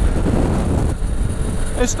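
Wind rushing and buffeting over a camera microphone on a motocross helmet while riding a 2006 Kawasaki KLV1000 at motorway speed, a dense low rumble with the bike's engine and road noise mixed in.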